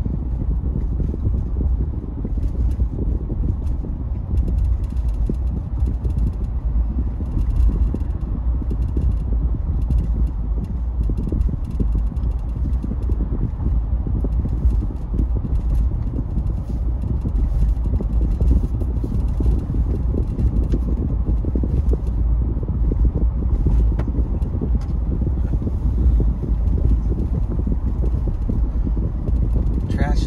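Steady low rumble of a Jeep Wrangler driving at town speed, heard from inside the cabin.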